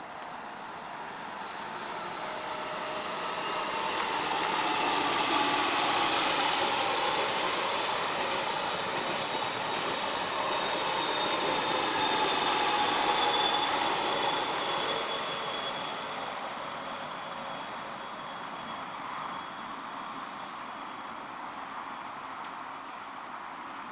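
Passenger train running over an elevated concrete viaduct: its rumble and rush swell as it approaches, hold loudest through the middle, then fade away as it passes. A thin high whine rides over the rumble, drifting slightly lower late on.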